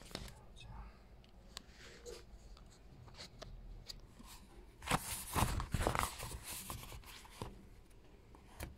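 Paper pages of a paperback book rustling and crinkling as they are handled and flipped, with small clicks throughout and a louder stretch of rustling about five seconds in.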